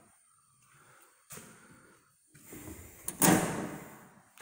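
The hinged metal door of a residential breaker panel being swung shut and latched: a light click about a second in, then a loud, sharp clack about three seconds in as the door closes.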